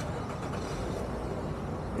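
A steady low vehicle rumble with road noise and no distinct events.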